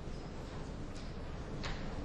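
Quiet room tone: a steady low rumble and hiss, with two faint clicks about one second and 1.7 seconds in.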